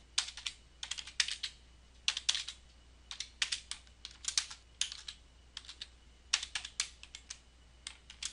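Computer keyboard typing in irregular runs of keystrokes with short pauses between them.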